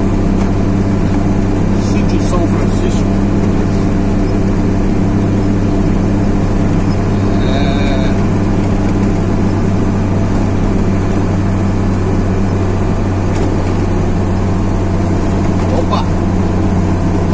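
A road vehicle's engine and tyre noise, heard from inside the vehicle while it cruises at a steady speed along a paved road: an even low drone with no change in pace.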